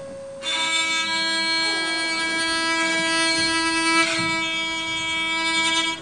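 Long wall-mounted strings stretched over a row of violin bridges, bowed with a violin bow. A single sustained bowed note, rich in overtones, comes in about half a second in and is held steadily.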